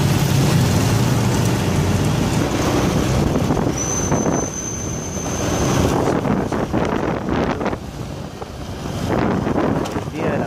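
Traffic and vehicle engine noise heard from a moving vehicle, with wind buffeting the microphone. A thin, steady high whine sounds for about two seconds near the middle.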